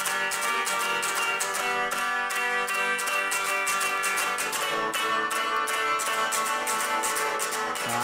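Stratocaster-style electric guitar played through a small amplifier, picking a quick run of notes over ringing chord tones in an instrumental break.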